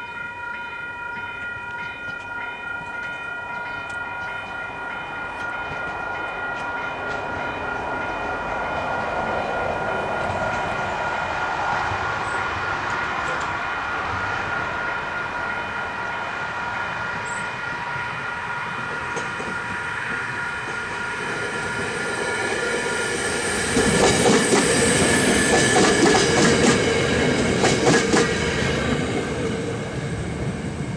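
Western Cullen Hayes electronic level-crossing bells ringing with a steady chime, fading out about two-thirds of the way through. A train comes up and passes loudly near the end, its wheels clattering rapidly over the rail joints.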